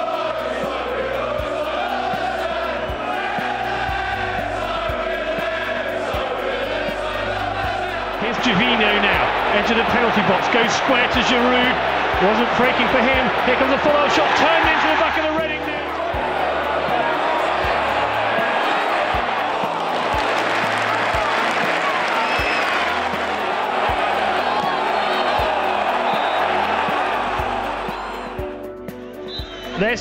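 Background music with a steady bass line, mixed with a football stadium crowd chanting. About eight seconds in, the crowd noise grows louder and denser.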